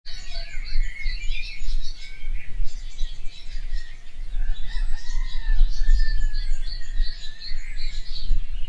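Birds chirping and singing, with many short calls and a few longer gliding whistles, over a steady low rumble.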